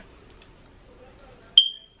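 Quiet room tone, then near the end a single loud, high-pitched electronic beep that starts with a click and fades out within about half a second.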